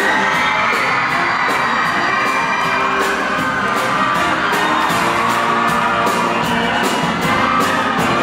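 Live band music with a steady beat, from drums, electric guitars, keyboard and horns, with an audience cheering and whooping over it.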